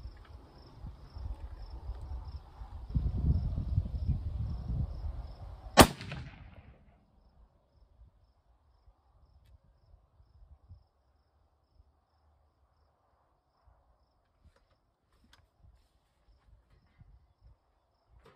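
A single rifle shot from a scoped Savage 99 lever-action in .308 Winchester, about six seconds in: a sharp crack with a brief ring-off. Before the shot there is a low rumble and a steady, high, pulsing insect chirp.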